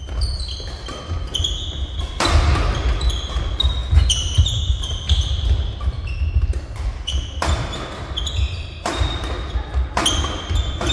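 Badminton doubles rally: rackets striking the shuttlecock in sharp, irregular cracks, several of them loud hard hits, with sneakers squeaking on the court floor between shots.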